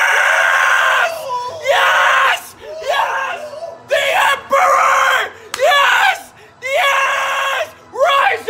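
Excited male screaming: a run of six or seven loud, high yells without words, each about a second long with short breaks between them.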